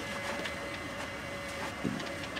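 Distant burning cars and a standing fire engine: a steady background hum with scattered crackles and pops from the fire, and a dull thump near the end.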